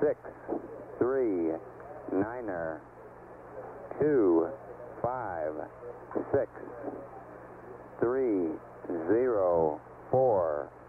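A male voice over a narrow-band air-to-ground radio link, reading out numbers in short clipped bursts with pauses between, as in a spacecraft data readup. A steady low hum runs underneath.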